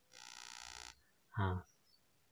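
A short, steady, buzzy electronic tone lasting under a second, followed by a brief spoken 'ah'.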